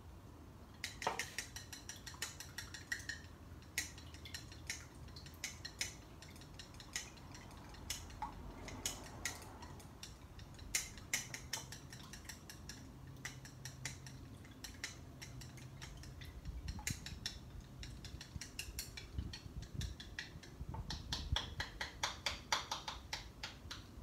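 Wooden chopsticks clicking and tapping against a rice bowl while stirring green gel food colouring into egg white, in irregular strokes that come faster near the end. The gel is hard to break up and has to be chased around the bowl.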